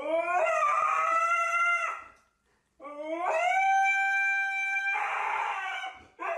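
Husky-type dog howling: two long howls, each rising in pitch and then held steady, with a short break between them; the second turns raspy near the end.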